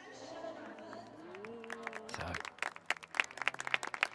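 Scattered hand clapping from a small crowd, starting about halfway through as a run of irregular sharp claps.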